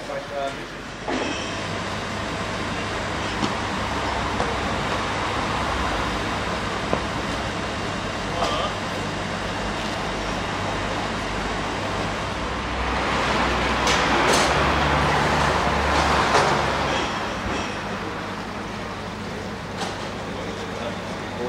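Engine of a Mercedes-Benz light flatbed truck comes on about a second in and runs steadily, growing louder for a few seconds in the middle, with voices in the background.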